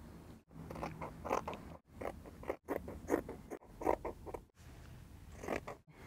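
Scissors cutting through dress fabric, a run of short crunchy snips, with the sound broken by several brief silent gaps.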